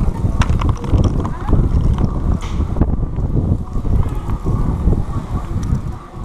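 Wind buffeting the microphone of a camera carried on foot: a loud, uneven low rumble with scattered short clicks and knocks.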